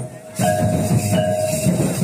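Santali folk dance music: drums beating a fast, driving rhythm under a short ringing note repeated about once a second. The music dips briefly just after the start, then comes back in full.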